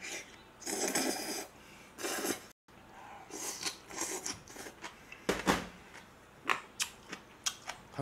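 Close-miked eating sounds: jjajangmyeon noodles slurped in two noisy bursts in the first couple of seconds, then sipping from a small cup and wet chewing with many short mouth clicks and smacks, one of them stronger about five seconds in.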